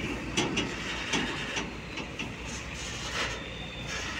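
Heavy tractor-trailer trucks hauling iso tanks running with a low steady engine rumble, with scattered clanks and knocks.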